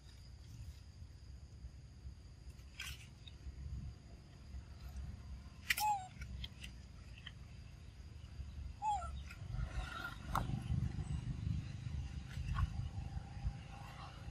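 Two short squeaky calls that fall in pitch, from young macaques, about six and nine seconds in, the first with a sharp click and the loudest thing here. Under them run a steady high insect drone, a low rumble and a few more scattered clicks.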